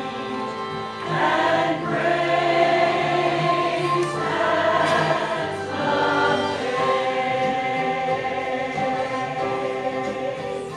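Mixed church choir of men and women singing a Christmas cantata, the voices swelling louder about a second in.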